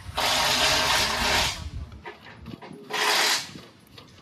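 Two bursts from a pneumatic air tool at the rear wheel hub, the first just over a second long, the second about half a second.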